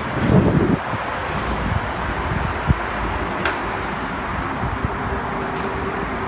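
Doors of a stopped Siemens U2 light-rail car opening with a brief rumble about half a second in, over a steady hum from the standing train, with a couple of sharp clicks a little later.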